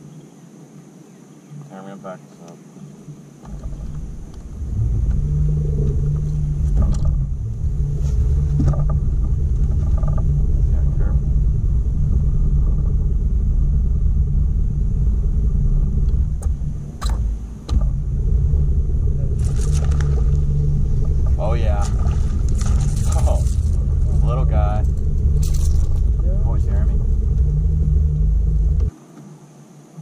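Loud, steady low rumble that builds in a few seconds in and cuts off abruptly near the end, with quiet voices now and then.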